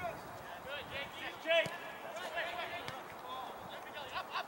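Players' voices calling and shouting across a football pitch during live play, with one sharp thud of a ball being struck about a second and a half in.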